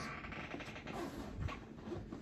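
Faint rasp of the small zipper on a Louis Vuitton Christopher backpack's inside pocket being pulled open, with the bag rustling as it is handled.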